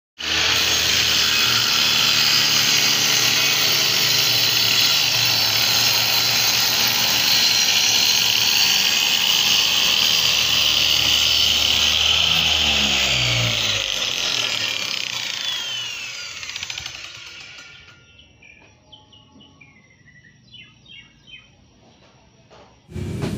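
Electric circular saw, mounted on a sliding rail carriage, running at full speed and cutting through plywood. After about thirteen seconds it is switched off and its motor spins down, the pitch falling as it dies away over about five seconds.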